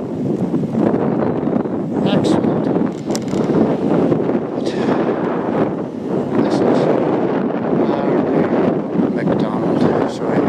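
Gusty wind buffeting the microphone, a loud rumbling rush that swells and dips throughout.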